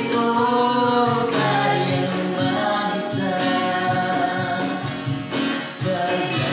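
A man and a woman singing a Tagalog song together in held, slow phrases over acoustic guitar accompaniment, with a brief pause between lines near the end.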